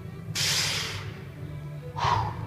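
A sharp, hissing exhale through the mouth, the breath of exertion as the push-up is driven, about a third of a second in and fading within about half a second. A shorter breath follows near the end, over steady background music.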